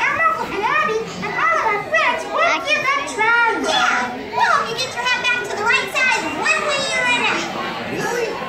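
A crowd of young children shouting and calling out excitedly over one another, many high voices at once.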